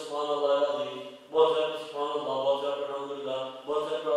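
A man's voice chanting an Islamic devotional recitation in long, level-pitched phrases. It breaks briefly about a second in and again near the end.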